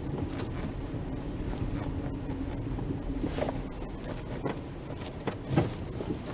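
Car moving slowly over a rutted dirt track, heard from inside the cabin: a steady low engine and road rumble with a held hum, and a few knocks as it jolts over bumps, the loudest near the end.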